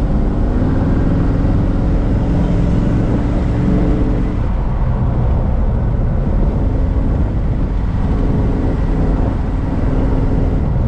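A 1957 Chevrolet Bel Air's 350 V8 with headers and dual exhaust running steadily under way, heard from inside the cabin over road noise. Its engine note stands out most in the first four seconds and again near the end.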